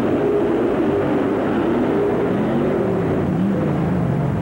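Monster truck engines at full throttle during a side-by-side race. The engine pitch holds steady, then drops and wavers in the second half.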